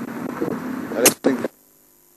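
Safari vehicle running under brief muffled speech, with a sharp hiss about a second in. Then the sound drops out to a faint hum for the last half second.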